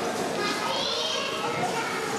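A group of young children shouting and chattering at play, with one child's high-pitched shout rising and falling about half a second in.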